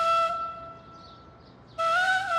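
Background music: a solo flute holds one long note that fades away, then starts a new phrase just before the end.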